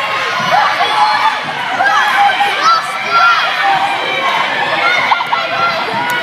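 A crowd of children shouting and cheering on runners in a race, many high voices overlapping in a sports hall.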